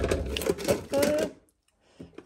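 Clattering and rustling as a plastic-wrapped package is pushed onto a kitchen wall-cupboard shelf among other stored things. The sound cuts off abruptly about one and a half seconds in.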